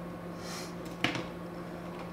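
A palette knife scraping paint off a palette in a short soft scrape, then a single light tap just after a second in.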